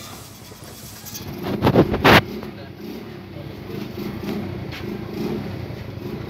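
A short loud burst of rustling noise about two seconds in, followed by a steady low drone of a running engine in the background.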